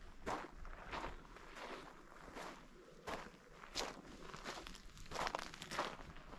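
A hiker's footsteps on a sandy, gravelly desert trail, at a steady walking pace of about three steps every two seconds.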